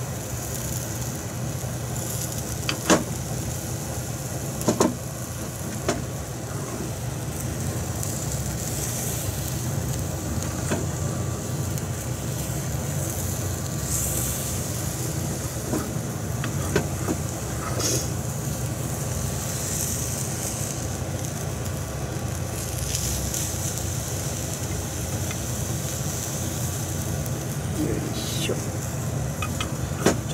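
Beaten egg sizzling steadily in a rectangular tamagoyaki pan over a gas flame as the omelette is rolled, with a few sharp taps of chopsticks against the pan.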